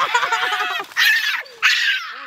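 A woman's excited, squealing laughter in three high bursts.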